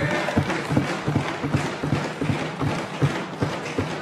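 Members of the House thumping their desks in approval, a fast run of dull knocks, under many voices calling out and laughing.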